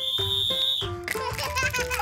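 A small plastic toy whistle blown once, a steady high-pitched tone lasting just under a second. Light background music follows.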